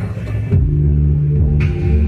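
A band's music comes in about half a second in: deep, sustained low bass tones with a sharp hit near the end, as the song gets under way after its spoken intro.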